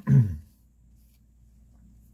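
A brief vocal sound at the very start, then faint, soft rubbing of a damp paper towel wiping a steel knife blade.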